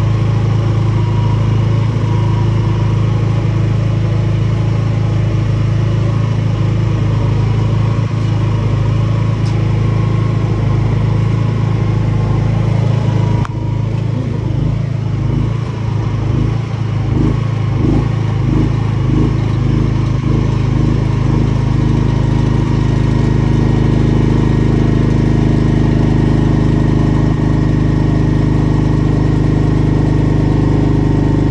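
Bajaj-M 10000 PS 10 kVA petrol generator engine running steadily and loudly. About halfway through its note changes suddenly and wavers for several seconds, then settles into steady running again.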